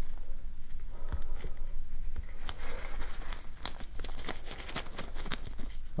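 Close-miked crinkling and rustling of gloved hands handling a soft white wipe against the skin pad: a dense run of small sharp crackles and clicks.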